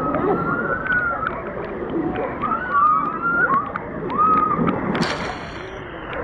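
Pool water sloshing and splashing right against a camera held at the water's surface, with many small splashing ticks and faint distant voices.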